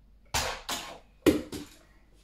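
Four sharp knocks in two quick pairs: a hand slapping down on a T-Racers toy-car launcher on a table, and the small toy car knocking and clattering as it is launched.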